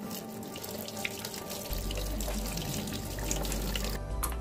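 Water from a kitchen tap running steadily into a stainless-steel sink, a continuous splashing rush. A low hum comes in a little under two seconds in.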